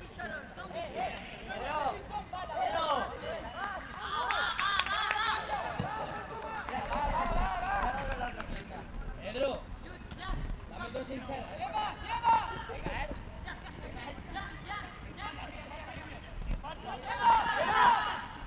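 Voices shouting and calling across an outdoor football pitch during play, with the loudest burst of shouting near the end.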